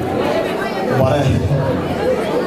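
Speech: a man talking in Somali into a bank of press microphones, with other voices chattering behind him.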